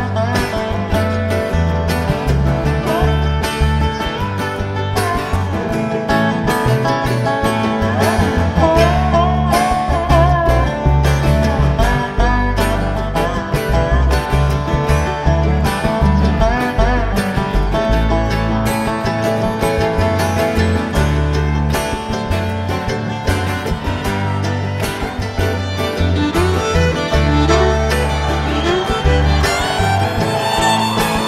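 Live bluegrass band playing an instrumental break between sung choruses: dobro, acoustic guitar and fiddle over a steady bass line.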